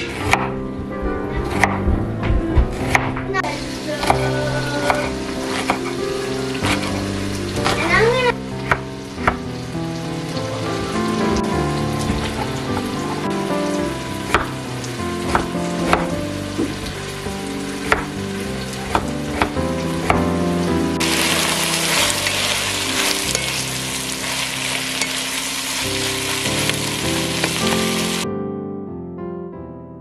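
Knife and crinkle-cutter strikes on a wooden cutting board, chopping onion and potato, over background music. About three-quarters of the way in, diced vegetables start sizzling as they fry in a pot.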